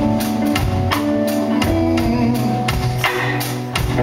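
Live band playing: electric guitars, bass guitar and a drum kit, with steady drum hits under sustained guitar notes and no singing.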